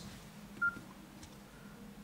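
A single short, high keypad beep from the Nokia C5 as a key is pressed to open the main menu, over faint room tone.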